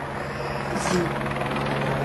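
A motor vehicle's engine running steadily, a low even hum over the general noise of a city street.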